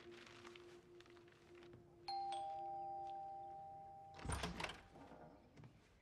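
A two-note ding-dong doorbell chime, a higher note followed by a lower one, rings out about two seconds in and dies away over about two seconds. A short clatter follows, over faint background music that fades away.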